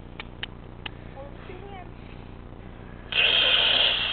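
A few faint clicks, then about three seconds in, an aerosol can of silly string sprays with a loud, steady hiss for about a second.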